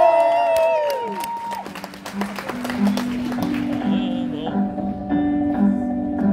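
Electric guitar beginning a song's intro, playing a repeating pattern of single notes, while an audience claps. A woman's voice holds a long rising-and-falling "oh" over the first second.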